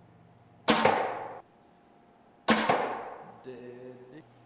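A traditional wooden bow being shot. There are two sharp whacks of string release and arrow strike, about two seconds apart, each ringing off in the small room.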